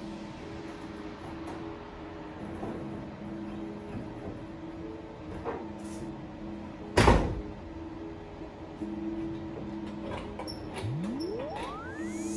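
A plexiglass window pane being slid and worked into an old pickup door's window channel, with one loud knock about seven seconds in, over the steady hum of a portable air conditioner. Near the end a rising swoosh leads into music.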